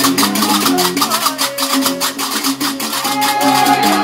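Diwan (Gnawa) ritual music: large iron qarqabou castanets clacking in a steady rhythm over a repeating plucked bass line of a gumbri. Voices come in singing near the end.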